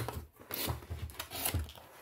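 A cardboard box being handled and opened: a series of scratchy rubbing and scraping sounds of the carton and its packaging.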